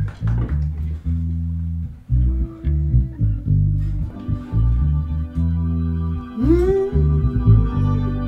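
Live band opening a song: an electric bass plays a riff of short, punchy low notes with guitar. About four seconds in, a sustained organ chord joins, and a note slides upward a couple of seconds later.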